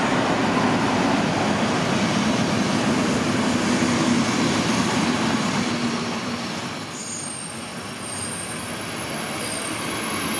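Class 119 diesel locomotive pulling a train out with a steady engine hum that fades after about six seconds as it draws away, while passenger coaches roll past close by on the rails. A thin high wheel squeal comes in near the end.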